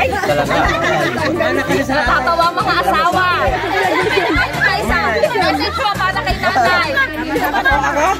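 Several people chattering over each other, with background music underneath.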